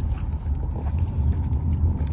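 Steady low rumble of road and engine noise inside a moving car's cabin, with a few faint small clicks of handling.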